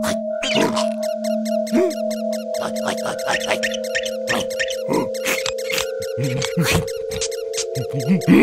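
Animated cartoon soundtrack: background music holding a few sustained notes under a rapid string of squeaks, gibberish character cries and short knocks from a cartoon mouse scuffling with a bug.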